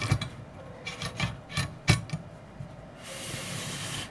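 A soldering iron being seated in the coiled-spring holder of its metal stand: a few light clicks and knocks of metal on metal, then a steady rubbing sound for about a second near the end.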